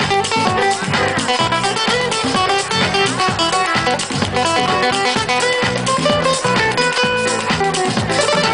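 Live band music: an acoustic guitar strummed and plucked over hand percussion and keyboard, with a steady, driving rhythm.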